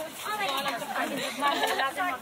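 Close voices of passers-by chatting as they walk by, several people talking.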